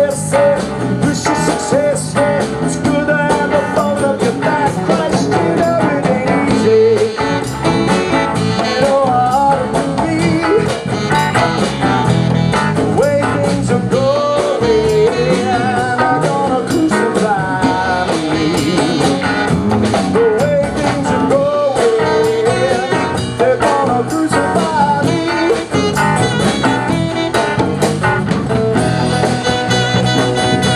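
A live band plays a bluesy rock song on guitars, bass and drums, with a saxophone in the line-up and a man singing.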